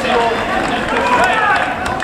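Indistinct men's voices shouting and calling across a football pitch from players and spectators, over a rough low rumble on the microphone.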